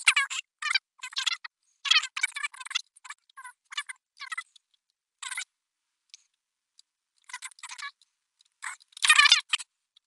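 A man's speech played back fast-forwarded, so the voice comes out high-pitched and garbled in short bursts with gaps between them.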